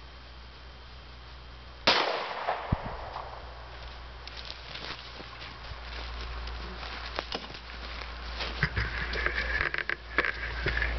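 A single handgun shot, a Federal Hydra-Shok hollow-point round fired into a ballistics gel block, about two seconds in, with a decaying echo after it. Scattered small clicks follow.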